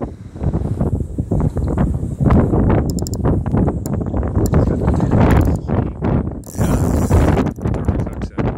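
Wind buffeting the phone's microphone in loud, uneven gusts.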